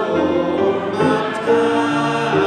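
Church congregation singing a hymn together, many voices holding long notes and moving between them in step.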